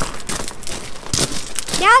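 Irregular crackling and rustling, with a man laughing briefly near the end.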